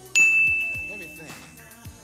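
A single bell-like ding sound effect: one sudden strike just after the start, ringing on one high tone and fading out over about a second and a half, over faint background music.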